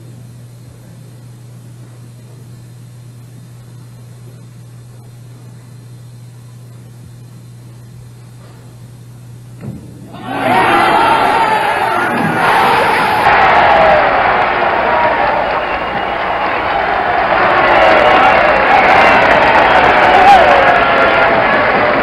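Bowling crowd held silent under a steady low hum, then a brief knock about ten seconds in, and the crowd erupts into loud, sustained cheering and shouting that runs on: the ovation for the final strike of a perfect 300 game.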